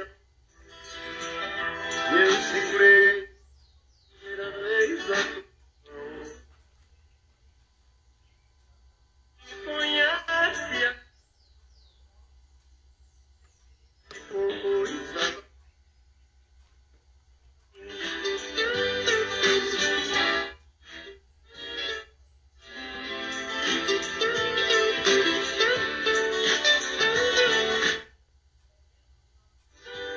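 A song with vocals from a Rádio Nacional DRM shortwave broadcast (xHE-AAC), playing from a Gospell DRM radio's loudspeaker. The audio repeatedly cuts off abruptly to silence for one to three seconds, about seven times, then resumes: the digital decoder muting on dropouts in a marginal signal.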